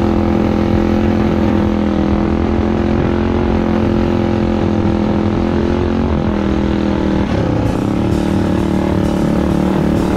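Minibike engine running at a steady, held throttle on a dirt trail, briefly easing off and picking back up about seven seconds in.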